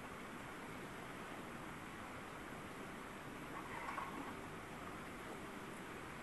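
Steady outdoor ambient hiss, with a brief louder swell about four seconds in.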